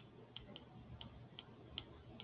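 Faint, irregular light clicks, two or three a second, from a stylus tapping and writing on a tablet screen.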